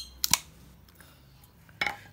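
Metal twist-off lid of a glass jar of tuna being opened: two sharp clicks close together about a quarter of a second in as the seal gives, then quiet handling of the jar.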